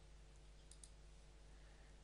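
Near silence: faint room hum with a few faint computer clicks, two of them in quick succession a little under a second in.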